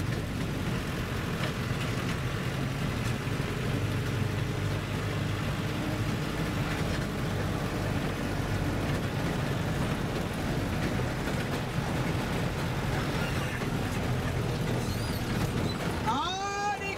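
A road vehicle driving at a steady speed: a continuous low rumble of engine and road noise, heard from on board.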